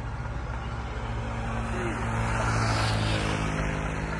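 A motor engine runs with a steady low hum, growing louder about two to three seconds in and then easing off.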